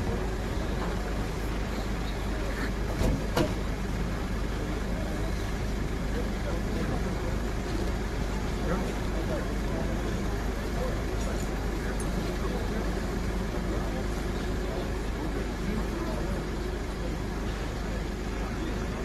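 A vehicle engine running steadily under a constant background rumble, with faint indistinct voices and two short knocks about three seconds in.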